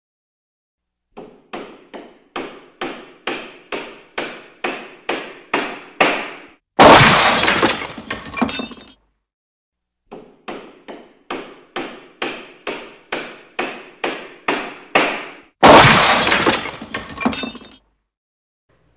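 Staged sound effect: about a dozen sharp knocks coming faster and louder, ending in a loud crash of breaking glass that lasts about two seconds. After a short silence the whole build-up and shatter repeat.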